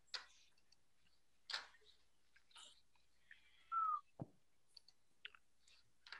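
Faint, scattered computer mouse and keyboard clicks. About four seconds in, a short tone falls in pitch and is the loudest sound.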